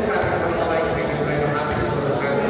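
Crowd of spectators in a packed indoor sports hall: many voices shouting and calling at once, with scattered sharp claps mixed in.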